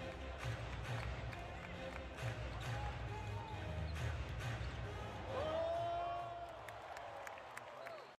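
Basketball game heard from the arena stands: crowd chatter, a ball being dribbled on the hardwood and arena music with a pulsing bass. A little past halfway, a drawn-out tone rises and then holds for about a second over the rest.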